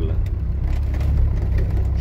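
Cabin sound of an off-road FSO Polonez-based vehicle's 2.8 diesel engine pulling steadily in low-range gear, a deep steady drone with scattered light knocks and rattles from the body as it crawls over rough ground.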